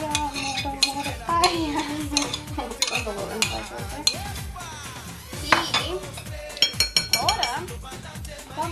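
Metal spoon scraping and knocking against ceramic bowls as chopped vegetables are scraped from one bowl into another and stirred, an irregular run of clinks and knocks.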